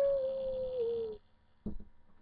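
A child's voice imitating a wolf howl: one long held 'awoo' that rises a little at the start, then slowly sinks and stops a little over a second in. A brief knock follows near the end.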